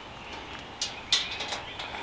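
Wire fridge basket being handled, giving two short light clinks about a third of a second apart over a faint background.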